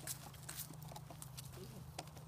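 Puppy's paws padding and clicking along a low agility teeter board, with a few faint knocks from the board, over a steady low hum.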